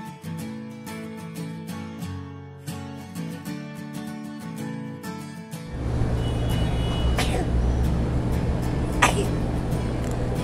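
Upbeat strummed-guitar background music for the first half, then, from about six seconds in, the steady low rumble of city street traffic.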